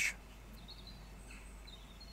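Quiet room tone with a steady low hum and a few faint, brief high-pitched chirps, about half a second in and again near the end.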